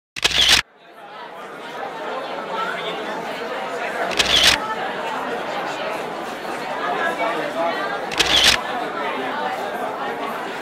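Three camera-shutter clicks about four seconds apart: at the very start, about four seconds in and about eight seconds in. Between them is the steady chatter of a crowd of children and adults in a hall, which fades in after the first click.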